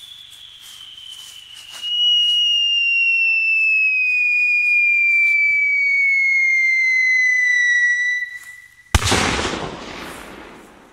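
Ground firework giving a loud whistle that falls slowly and steadily in pitch, swelling about two seconds in. It stops just before a single sharp bang about nine seconds in, which dies away over the next second.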